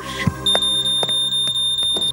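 Shop anti-theft security alarm going off: a single high, steady electronic tone that starts about half a second in, set off by a garment being carried out of the store unpaid for. Background music plays underneath.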